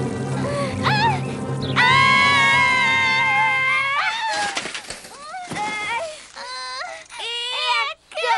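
Cartoon mouse characters' long high-pitched scream over background music, then a crash about four seconds in as they and their tandem bicycle end up in a mud puddle. The crash is followed by whimpering, crying voices.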